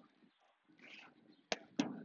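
Two sharp knocks of a platform tennis ball in play, struck by a paddle or bouncing off the court, about a second and a half in and again a moment later.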